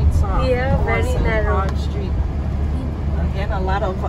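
Steady low engine and road rumble inside a moving car's cabin, with voices talking over it in two stretches, near the start and near the end.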